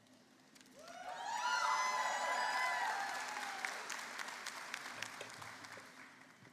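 Audience applause with a few cheering voices, swelling about a second in and fading away over the next few seconds.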